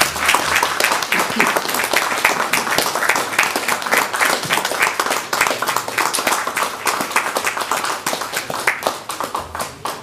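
Audience applauding in a meeting room: many hands clapping steadily, thinning out near the end.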